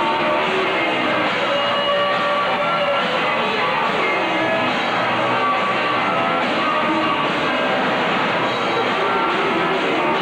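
Live rock band playing, electric guitars and drums, with a steady full sound. The recording is dull and muffled, its highs cut off, as from a poor old VHS tape.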